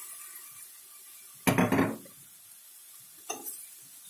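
Kitchen utensil and bowl clinking against a frying pan as beaten egg is poured in and stirred: one loud ringing clink about a second and a half in, then a short lighter click near the end.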